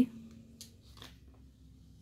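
Faint handling of a plastic seasoning sachet, with two soft crinkles about half a second and a second in, over quiet room tone.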